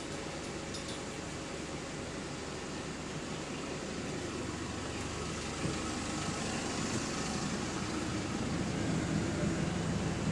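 Steady running noise of a double-decker bus heard from inside the passenger cabin, with a low rumble that grows gradually louder over the few seconds.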